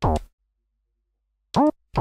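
Cyclone Analogic TT-303 Bass Bot, a TB-303 clone synthesizer, sounding short bass-line notes: one at the start, then a pause, then two near the end, each sliding up in pitch as it begins.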